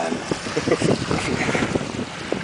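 Wind buffeting the microphone over water rushing and splashing irregularly around a sailing yacht under way.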